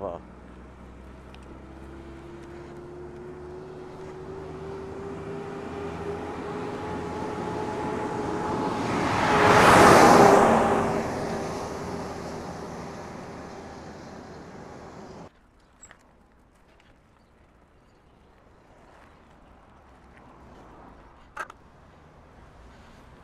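Concrete mixer truck driving past on the road: its engine and tyre noise build for about ten seconds, peak as it passes with the engine's pitch dropping, then fade. The sound cuts off abruptly about fifteen seconds in, leaving faint outdoor quiet with a brief click near the end.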